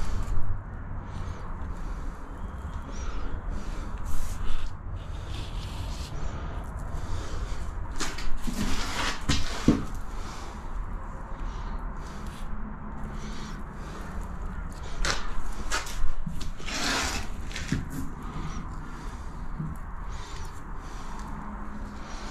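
A gloved finger rubbing along a silicone-filled wall-to-floor joint, smoothing the bead of bond-breaker silicone into a curve: scattered soft scuffs and swishes over a low steady hum.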